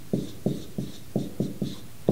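Dry-erase marker writing on a whiteboard: a quick run of short marker strokes, about three to four a second.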